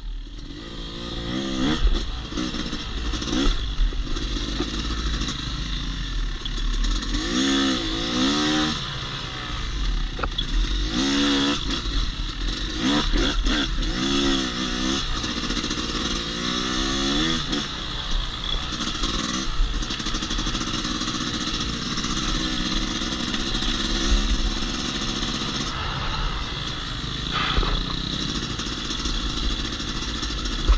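Yamaha YZ250X two-stroke dirt bike engine being ridden, revving up again and again in rising sweeps as the throttle is opened along a trail, between steadier stretches.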